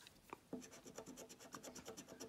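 A coin scratching the scratch-off coating of a scratchcard: a faint run of quick, short strokes, about eight to ten a second, starting about half a second in.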